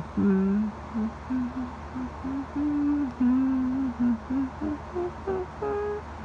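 A man humming a tune through closed lips, a string of held notes that move up and down and climb higher near the end.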